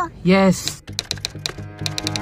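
Computer-keyboard typing sound effect: a quick run of key clicks, about seven or eight a second, over the start of background music. It accompanies the on-screen title text being typed out. A short vocal sound comes just before the clicks.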